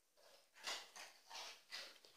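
A dog's quiet breathing: four soft, breathy puffs about a third of a second apart, starting a little way in.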